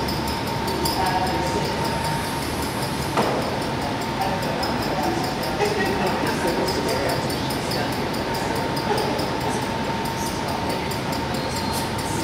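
Steady machine hum and rush filling a large hall, with a faint high steady whine and one sharp click about three seconds in.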